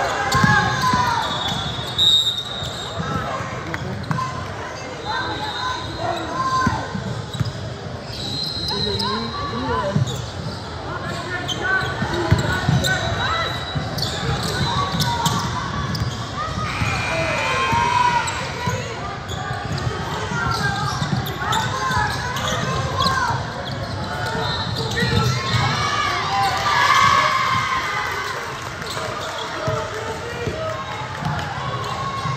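Basketball game on a hardwood gym court: a ball bouncing as players dribble, sneakers squeaking in short chirps, and players and spectators calling out, all echoing in a large hall.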